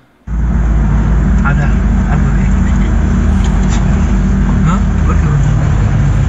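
Phone-recorded sound from inside a moving car: a steady low rumble of engine and road noise that starts suddenly a quarter second in, with faint voices now and then.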